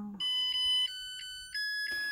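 Zojirushi NP-HCC10 rice cooker playing its electronic start-up melody after the Start button is pressed, signalling that the cooking cycle has begun. It plays as a series of clean beeping notes, a new pitch about every two-thirds of a second.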